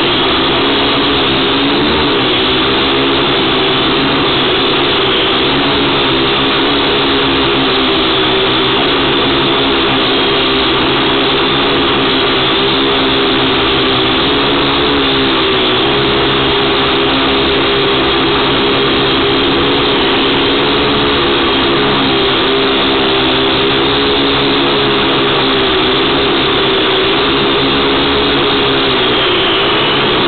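Syma X1 quadcopter's four small electric motors and propellers whining steadily in flight, recorded by the camera mounted on the drone itself, so the motor sound is loud and close. The pitch wavers slightly with throttle, dipping briefly about two seconds in and again near the end.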